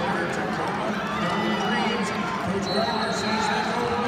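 Crowd hubbub in a large arena: many overlapping voices and distant shouts from spectators, steady throughout.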